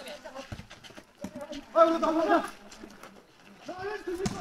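A spectator's loud laugh: one held, pitched vocal call of about half a second, a little under two seconds in, with a few dull thumps before it and another voice starting up near the end.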